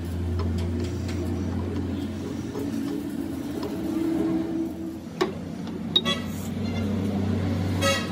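Metal parts being handled against a lathe chuck: a steel axle stub knocking in a flanged bearing housing, with a sharp clink about six seconds in and another near the end that ring briefly, over a steady low hum.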